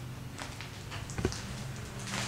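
Footsteps and small scuffs on a debris-strewn concrete floor: a few faint clicks and a soft thump a little past a second in, over a low steady hum.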